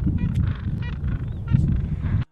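Gentoo penguins in a colony giving several short calls over a steady low rumble.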